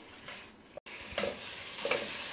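Chicken Manchurian sizzling in a wok as a metal ladle stirs and scrapes it, with a few sharp ladle clicks against the pan. The sizzling comes in after a quiet first second and a sudden brief break.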